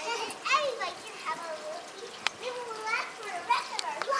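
Children's voices, high-pitched calling and chatter that the recogniser did not catch as words, with one sharp click a little over two seconds in.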